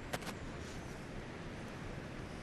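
Quiet outdoor ambience, a low steady hiss with two faint clicks shortly after the start.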